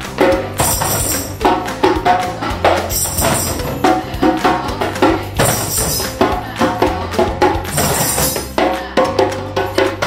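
Several djembes played with bare hands in a steady, dense group rhythm. A jingling, rattling sound joins in about every two and a half seconds.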